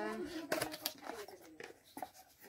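Cardboard packaging being handled and opened: short scrapes, rustles and clicks of the box flap and paper insert, with a woman's voice trailing off at the start and speaking softly over it.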